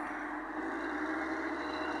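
Steady noise of road traffic, cars driving along the street.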